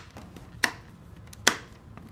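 Two sharp plastic clicks, about a second apart, as a hand works the top air vent on the ABS shell of a motorcycle helmet.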